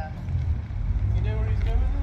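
People's voices chatting in the background over a steady low rumble.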